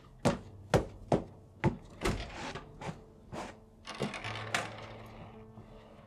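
A run of sharp knocks and thumps, about seven in the first four seconds, with short scraping rustles around two and four seconds in. Faint steady music starts underneath about four seconds in.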